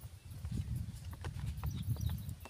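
Low rumbling noise on a neckband earphone microphone with scattered light knocks, the rubbing and handling noise of the wearer moving.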